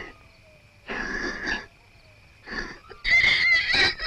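A horse coughing and blowing in thick smoke: three breathy bursts, the last and loudest near the end.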